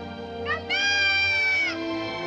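Film-score music with a boy's long, high-pitched call over it. A short rising note about half a second in leads into one held note of about a second that drops off at its end.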